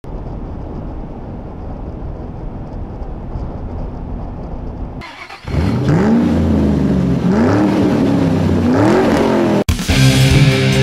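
A steady low rumble for the first half. Then, after a short dip, a louder car engine revving, its pitch climbing and falling three times, cut off abruptly just before the end.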